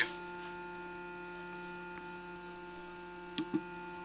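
Steady electrical mains hum made of several constant tones, with two faint short blips about three and a half seconds in.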